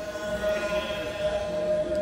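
The twin 10 mm brushless motors and propellers of a small foam RC warbird whine steadily in flight. The buzz grows fuller and louder for a moment in the middle as the plane passes close.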